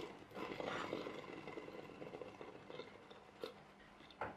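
Faint crinkling and crackling of a thin plastic bottle being handled, with a light click at the start and another near the end.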